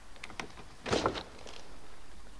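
Frameless car door being opened: a few light clicks from the handle and latch, a louder clunk about a second in as it unlatches, then the frameless window glass briefly motoring down.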